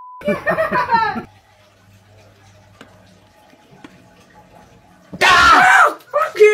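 A short steady bleep and a woman's voice for about a second, then a few seconds of quiet, then a woman's loud, shrill scream of fright near the end.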